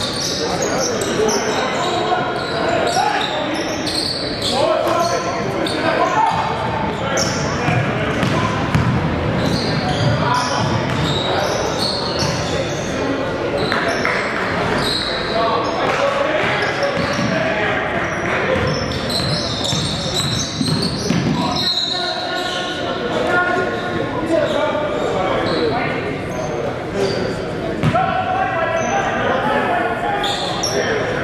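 Live basketball game sound in a large gymnasium: a basketball bouncing on the wooden court among players' indistinct shouts and calls, all echoing in the hall.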